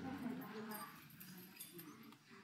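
Faint, indistinct voices murmuring, with no clear words.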